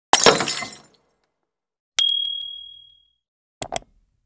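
Edited intro sound effects: a glass-shatter crash that dies away within a second, then a single bright ding about two seconds in that rings and fades, then two quick mouse-click sounds near the end as the pointer hits a Subscribe button.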